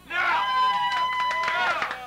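A person's voice lets out one long, high held call of about a second and a half over bar-crowd noise, with a few sharp knocks or claps around it.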